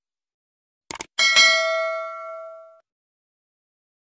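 Subscribe-button animation sound effect: a quick double mouse click about a second in, then a notification bell ding that rings for about a second and a half and fades out.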